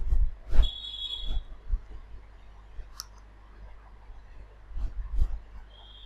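Scattered clicks and knocks from computer mouse and keyboard use, a few with a low thud. A brief high-pitched tone sounds about a second in and again near the end.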